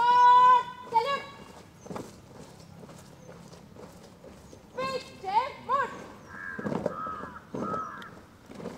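Drawn-out, high-pitched shouted drill commands from a parade commander: one long held call at the start and a short one just after, then a string of shorter rising and falling calls from about five seconds in.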